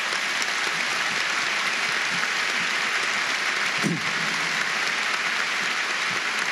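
A large audience applauding steadily, with sustained clapping from many people in response to a line in a speech.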